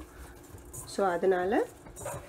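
Hand kneading rice-flour murukku dough in a stainless steel bowl: faint soft squishing and rubbing. A woman says a single short word in the middle.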